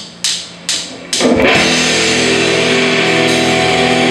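Four sharp clicks of a count-in, evenly spaced, then about a second in a rock band comes in loud together: electric guitar and bass guitar sustaining chords over drums.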